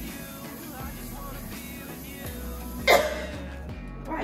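Background music playing steadily, with one short loud sound about three seconds in.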